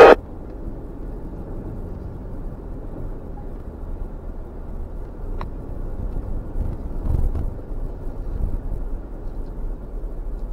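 Low, steady rumble of a Jeep driving slowly through shallow flood water and mud, heard from a camera on its hood; it swells a little about seven seconds in.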